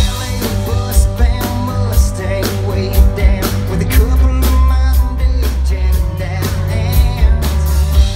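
Live rock band playing loud: electric guitars over bass and a drum kit keeping a steady beat.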